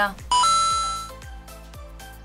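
A two-note chime sound effect, a short lower note stepping up to a higher one that rings and fades over about a second, over background music with a steady beat.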